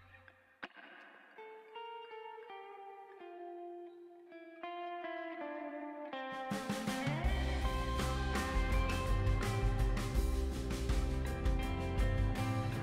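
Background music: a plucked guitar melody, sparse and quiet at first, with a fuller, louder backing and low bass notes joining about six seconds in.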